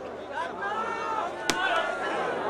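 A single sharp smack of a hand striking a volleyball about one and a half seconds in, over a background of crowd voices.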